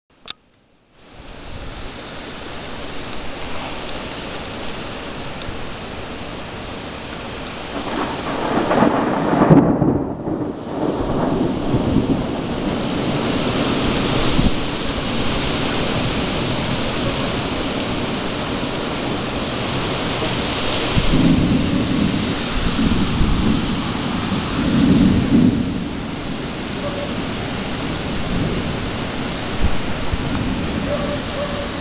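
Thunderstorm with steady rain hissing, thunder rolling in long low rumbles about eight seconds in and again from about twenty-one seconds in.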